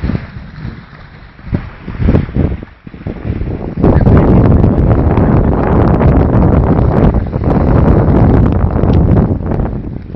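Wind buffeting the microphone: a few scattered knocks at first, then from about four seconds in a loud, deep, steady rumble that eases near the end.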